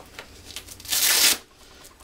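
A Velcro (hook-and-loop) tab on the waistband of tactical work pants is pulled apart once, about a second in: a short, loud tearing rip. Lighter rustling of the fabric being handled comes before it.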